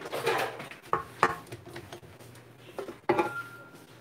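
Spatula scraping buttercream off a stand mixer's paddle and knocking against the stainless steel mixing bowl, with a few sharp clinks. A little after three seconds a louder metal clank as the bowl comes off the mixer, ringing briefly.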